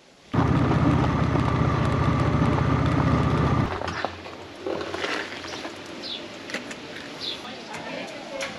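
Motorcycle engine running steadily while riding on a gravel road; it stops abruptly about three and a half seconds in. A quieter outdoor background with a few short high chirps follows.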